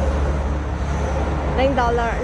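Steady low rumble of street traffic, with a woman's voice starting near the end.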